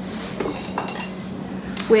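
A few light metallic clinks and clicks as a digital kitchen scale is shifted on a gas stove's metal grate, over a low steady hum.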